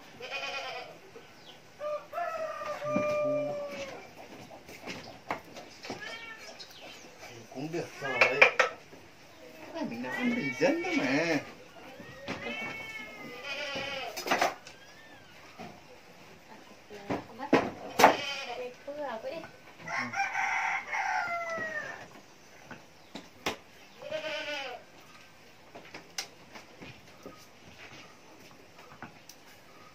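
Farm animals calling, about ten separate wavering calls each lasting a second or two, with a few sharp clicks in between.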